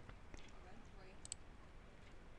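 Near silence with a few faint computer mouse clicks, including two close together about a second and a quarter in.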